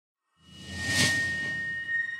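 Logo-reveal sound effect: a whoosh swells in and peaks about a second in over a low rumble. It leaves a high ringing tone that lingers and slowly fades.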